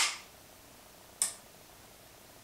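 The last of a 1911 pistol's slide snapping home, then about a second later a single short, sharp click: the Clapper's relay switching the floor lamp on, set off by the two sounds of the slide being racked.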